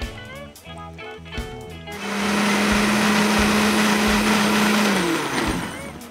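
Countertop blender switched on about two seconds in, running at a steady pitch for about three seconds as it purées blanched kangkong and malunggay leaves with olive oil and water into pesto, then spinning down with its hum falling.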